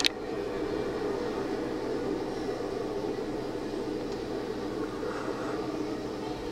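Steady background hum and hiss of a large indoor hall, with no distinct events, and one short sharp click at the very start.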